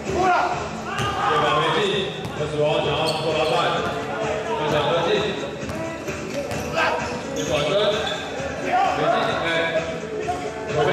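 A basketball bouncing on an indoor court floor, with people's voices in the hall throughout.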